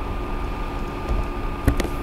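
Steady background hum and hiss of the room and microphone between spoken phrases, with two short clicks near the end.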